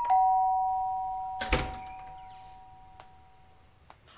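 Two-note doorbell chime, a high note then a lower one, ringing out and fading over about three and a half seconds, with a short thump about a second and a half in.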